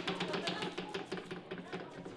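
Homemade spinning prize wheel turning, its pointer clicking over the pegs round the rim in a rapid run of clicks that gradually slow as the wheel loses speed.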